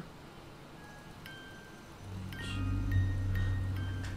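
Eerie horror-film score: a few high, thin held notes, then a low drone that swells in about halfway through.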